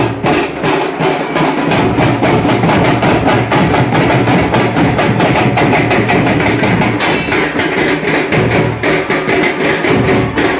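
A folk orchestra playing a lively piece led by percussion, with drums keeping a fast, even beat.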